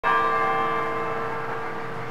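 A bell-like chime struck once at the very start, ringing on as a chord of many steady tones that slowly fades.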